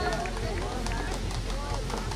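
Indistinct background voices over steady outdoor noise, with a few faint clicks.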